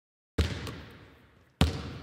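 Two single basketball bounces, each a sudden heavy thud with a long echoing decay, the first a little under half a second in and the second about a second later.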